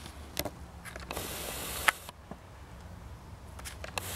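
Spent 5.7x28 brass casings clicking lightly inside a gutted aluminium magazine as it is handled, a few scattered clicks with the sharpest about two seconds in. A brief rush of hiss lasting about a second comes just before it, over a steady low rumble.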